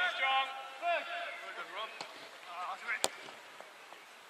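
Players' voices calling across a football pitch, then a single sharp kick of a football about three seconds in, a shot on goal.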